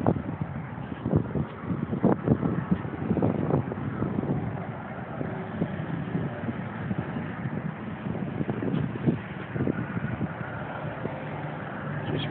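Wind buffeting a handheld phone's microphone, with irregular low thumps and rustles as it is carried around, over a faint steady low hum.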